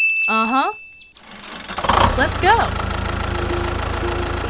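A bright chime held for about a second with a squeaky cartoon voice over it, then from about two seconds in a small engine starts up and runs with a steady low throb, with a few more short squeaky cartoon cries over it.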